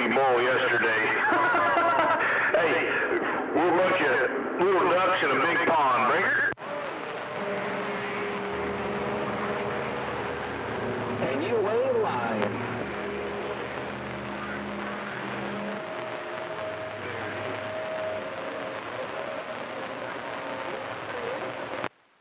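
CB radio receiver on channel 28 with garbled sideband voices for the first six seconds. The audio then drops abruptly to band static carrying faint steady whistling carrier tones and a brief warble.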